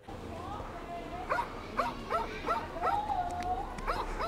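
An animal's string of short, high yelping calls, with one longer, arching whine about three seconds in, over a low steady hum.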